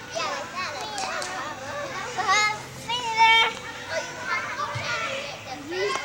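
Many high-pitched voices shouting and calling out over one another at an indoor soccer game, with two louder, held shouts about two and three seconds in.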